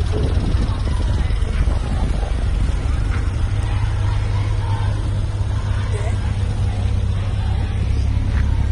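Cars driving slowly past in a line, a steady low rumble, with voices faintly in the background.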